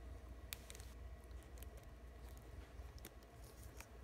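A few faint clicks and light rubbing from a plastic action figure being handled as its torso joint is bent, over a low steady hum.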